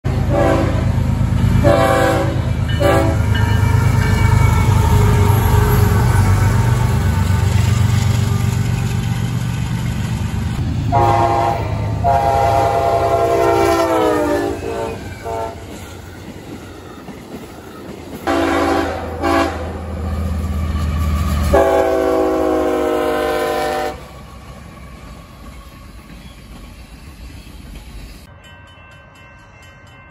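Freight locomotive air horns sounding over the rumble of a passing train: three short blasts, then a long blast that drops in pitch at its end as it passes, two more short blasts and a final long blast. The rumble stops about two-thirds of the way through, leaving a quieter background.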